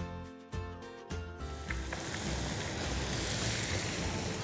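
Boiled noodles deep-frying in hot oil in a kadai: a steady sizzle that starts about a second and a half in and holds, as the noodles hit the oil.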